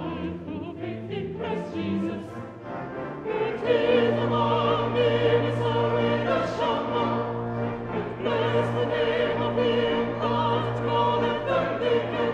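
Mixed choir of men and women singing, with held, wavering notes; the singing grows fuller and louder about three and a half seconds in.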